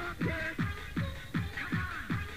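DJ mix of fast electronic dance music: a kick drum that drops in pitch with each hit, about three beats a second, under repeating synth chords.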